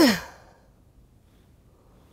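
A short sigh at the start, breathy and falling in pitch, over within about half a second.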